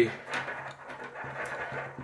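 Climbing rope and a prusik hitch cord rubbing under gloved hands, a low rustling as the six-coil prusik is worked tight on the line.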